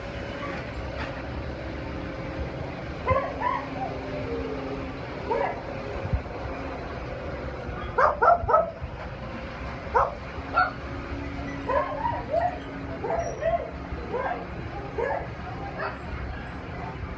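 Dog barking in short, sharp barks and yips scattered throughout, the loudest a quick run of three about eight seconds in.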